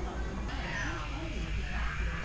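A cat-like meowing sound whose pitch glides up and down, starting about half a second in, over a steady low hum and background voices.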